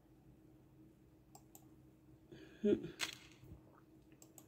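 A quiet room with a faint steady hum and a few small clicks. About three seconds in, a ceramic mug is set down with one short knock.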